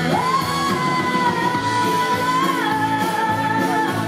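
A live band playing a country-pop song with a woman singing. A long held note steps down in pitch about two and a half seconds in.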